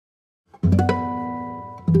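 Two plucked guitar chords: the first, rolled, comes in about half a second in and decays; the second is struck near the end and left ringing.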